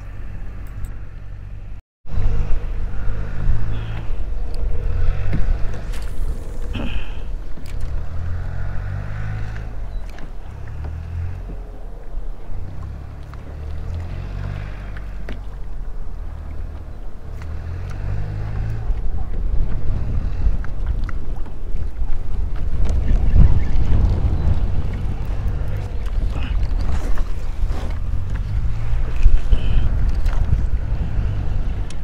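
Wind buffeting an action camera's microphone on a kayak: an uneven low rumble in gusts, growing stronger over the last third. A brief full dropout about two seconds in.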